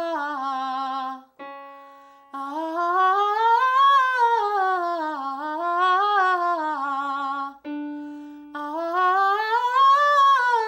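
Female voice singing a wordless warm-up exercise: a full scale up and down, then five notes up and down. Twice, about a second and a half in and near the end, a keyboard gives a short starting note between runs, each run starting a step higher.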